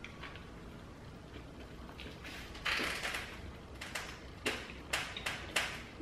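A person chewing a large mouthful of double chalupa with a crispy fried shell, with soft crunching and several sharp crunches in the last second and a half.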